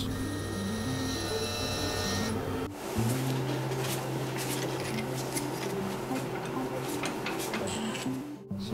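Soft background music with a steady hum under it. For the first few seconds a high whine comes from the tensile testing machine as it pulls the welded aluminium specimen. The whine cuts off suddenly about three seconds in, leaving a lower hum with faint clicks of handling.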